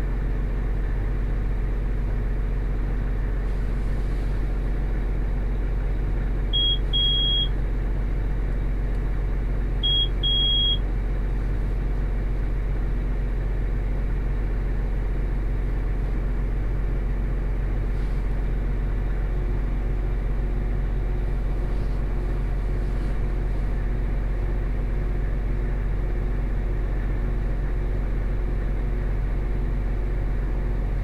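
A tractor's diesel engine running steadily, heard from inside the cab as a low drone. Two short electronic beeps sound over it, about seven and ten seconds in, each a quick pip followed by a slightly longer tone.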